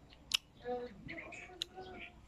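Mouth sounds of someone eating soft berries by hand: a sharp click about a third of a second in and a smaller one later, over faint voices.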